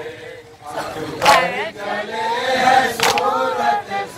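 Men's group chanting a nauha lament into a microphone, the voices resuming after a short breath about half a second in. Sharp strikes of chest-beating (matam) mark the beat, two of them here, evenly spaced about every second and three quarters.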